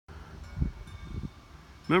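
Uneven low rumble on an outdoor phone microphone, swelling briefly about half a second in, then a man starts speaking near the end.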